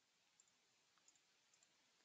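Near silence with three faint computer mouse clicks, spaced about half a second apart.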